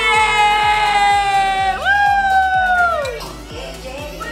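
People cheering with two long drawn-out yells, the second sliding down and breaking off about three seconds in, over background music with a steady beat.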